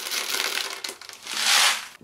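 Caustic soda pellets poured from a plastic bottle into a plastic bucket, pattering in, with a louder rushing pour about one and a half seconds in.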